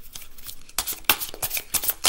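A deck of tarot cards being shuffled by hand. It is quiet at first, then a quick run of crisp card flicks and rustles starts about three-quarters of a second in.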